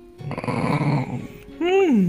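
Shiba Inu growling: one rough growl that starts a moment in and lasts about a second.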